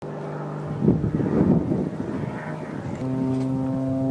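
A steady low droning hum with a row of overtones. A rushing roar swells over it about a second in and fades, and near the end the hum grows louder and fuller.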